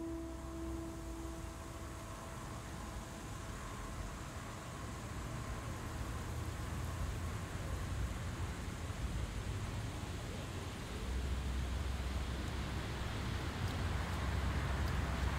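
Steady outdoor ambience: a low rumble with an even hiss over it, growing a little louder, with the rumble strengthening near the end. A last held note of music fades out at the very start.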